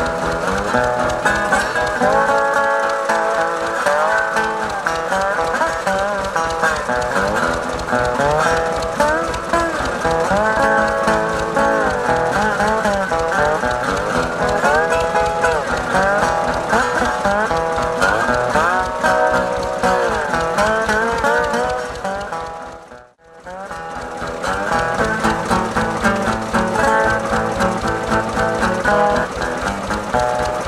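Bottleneck slide blues on a 1933 National Duolian steel-bodied resonator guitar, played over the steady beat of a running Bolinder-Munktell Victor two-cylinder tractor engine. The engine sets the rhythm, and the guitar drifts in and out of time with it. The sound briefly fades out and back in about 23 seconds in.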